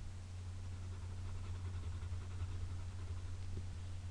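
Steady low electrical hum with faint hiss: the recording's background noise floor, with no other distinct sound.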